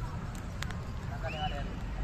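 Outdoor ambience: a steady low rumble with indistinct voices of people in the distance, too faint to make out, and a short high arcing note about midway through.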